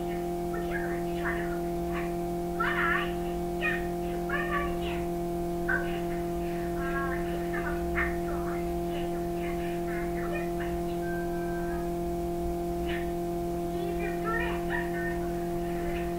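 Cartoon dialogue in high-pitched voices playing from a television across the room, over a steady low hum.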